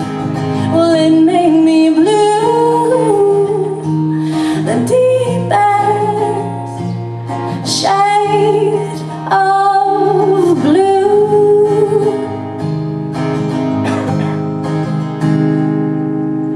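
A woman singing a wordless, sliding melody over strummed acoustic guitars, live. Over the last few seconds a chord is held and fades.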